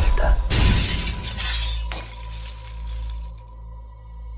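Glass shattering sound effect in a film trailer's soundtrack: a sudden crash about half a second in, then bright tinkling that fades over the next three seconds, over a low musical drone with a held tone.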